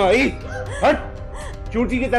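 A woman crying out in pain and distress, several short wailing cries that rise and fall in pitch, over dramatic background music.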